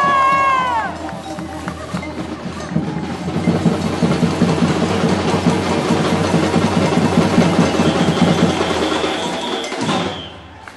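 Street percussion band of bass drums and snare drums playing a fast, dense rhythm together, then stopping all at once just before the end. A short pitched call rises and falls over the drums about a second in.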